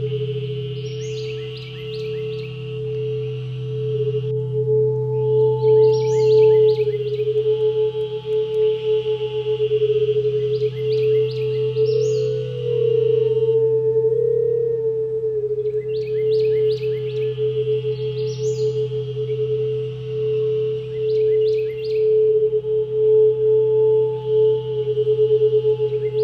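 Crystal singing bowl played around its rim, sustaining a steady ringing tone over a lower steady tone. Over it, short bursts of high chirping calls recur about every four to five seconds.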